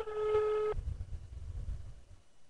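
Telephone ringback tone heard through a mobile phone's speaker: a single steady beep about a second long that stops near the start, the sign that the number being called is ringing. A faint low rumble follows.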